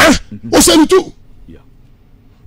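A man coughs once, sharp and loud, followed by a short spoken word.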